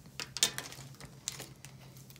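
A few light clicks and taps as a plastic felt-tip marker is handled and set down on the table, the loudest about half a second in.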